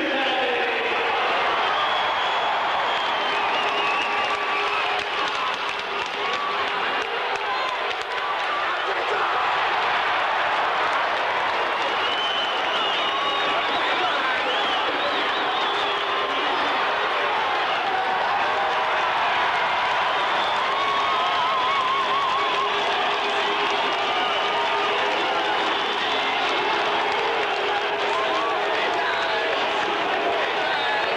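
Ice hockey arena crowd cheering and shouting steadily during a fight on the ice, a dense mass of many voices.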